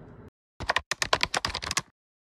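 Keyboard-typing sound effect: a rapid run of key clicks starting about half a second in and lasting just over a second.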